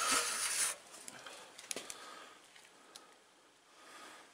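A brief rustling burst, then a few faint clicks and near quiet: handling noise from a handheld camera being moved.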